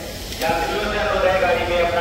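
A person's voice holding a long drawn-out call, over a steady background hiss, with a click about half a second in.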